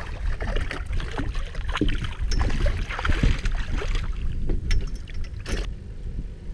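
A hooked redfish thrashing at the surface beside a boat hull, making a run of irregular splashes, with wind rumbling on the microphone.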